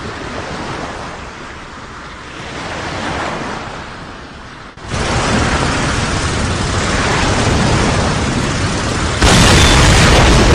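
Sea and wind noise swelling and easing, then an abrupt cut about five seconds in to a louder, steady low rumble of a landing craft under way through the surf, which steps up louder again near the end.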